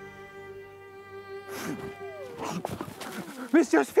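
A held bowed-string note of the film score fades out. About one and a half seconds in, a woman draws a sharp gasp, then gasps and pants for breath, louder towards the end, as she comes back to life.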